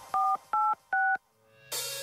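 Three telephone-keypad tones, each a short two-note beep, dialing the digits 4, 8 and 6 in quick succession. Quiet synth music comes in near the end.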